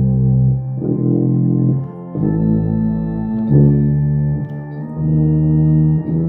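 Four-valve tuba playing a slow hymn in sustained notes along with organ chords, the harmony changing about every one and a half seconds.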